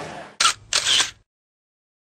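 Camera shutter firing: a short click, then a second, longer snap about a quarter of a second later.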